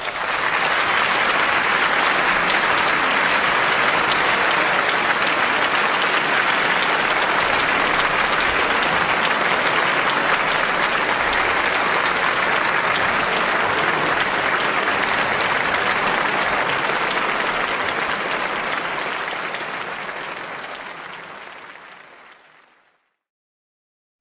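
Audience applauding steadily, fading out near the end.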